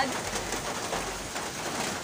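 A bird calling in the background over a steady hiss of outdoor noise.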